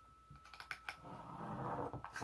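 Handling paper and a hot glue gun on a craft table: a few light clicks, then rustling and pressing of the paper cut-out against the canvas from about a second in.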